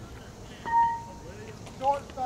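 An aluminum baseball bat strikes a ball about two-thirds of a second in, giving one sharp ping that rings on for about half a second. Voices call out near the end.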